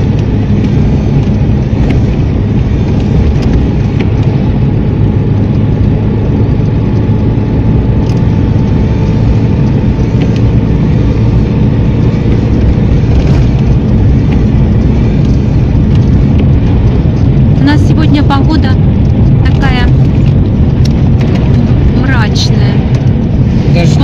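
Steady engine and tyre noise of a car driving on a wet road, heard from inside the cabin. A voice comes in briefly a few times near the end.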